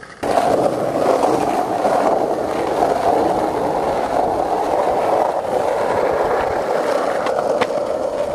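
Skateboard wheels rolling steadily over street asphalt, starting suddenly just after the start, with a few sharp clacks of the board near the end.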